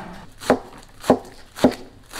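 Cleaver chopping a pile of radish greens on a wooden board: three sharp strokes about half a second apart.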